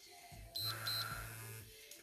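Workout interval timer giving two short high beeps about half a second in, over a low steady hum, marking the end of the rest period.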